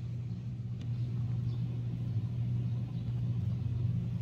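Steady low hum of running machinery, even and unchanging throughout.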